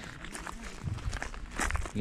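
Footsteps of people walking on a forest footpath: a few uneven steps.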